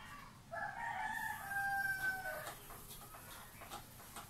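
A rooster crowing once: one long call of about two seconds, starting about half a second in and dropping in pitch as it ends. Then a whiteboard eraser rubbing across the board in short strokes.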